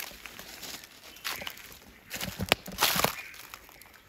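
Hand pressing and mixing a pile of roasted red ants on a fresh green leaf, the leaf crinkling and rustling against stones and dry leaf litter. There are irregular crackles, with a cluster of sharper ones about two and a half to three seconds in.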